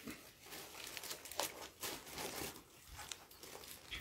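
Faint crinkling and scattered soft clicks of hands picking food from plates and a shared serving platter during a meal eaten by hand.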